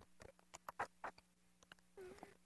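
Near silence: faint room hum with a scattering of faint, short clicks.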